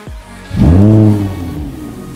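Lamborghini supercar engine starting up: about half a second in it catches with a loud rev that rises in pitch and then falls back, settling to a lower, steady idle.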